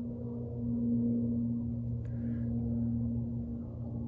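A steady, low, pitched hum that does not change, with a brief soft noise about two seconds in.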